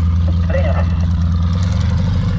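Piston engine of a light aircraft, the yellow tow plane, running steadily nearby as a loud, deep drone.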